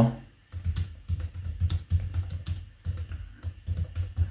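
Typing on a computer keyboard: a quick, irregular run of keystrokes that starts about half a second in.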